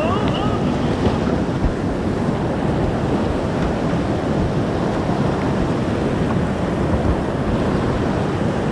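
Steady rushing of whitewater rapids around a kayak at water level, with a few brief splashes.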